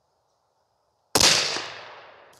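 A single shot from a bolt-action precision rifle about a second in: a sudden loud report whose echo fades away over about a second.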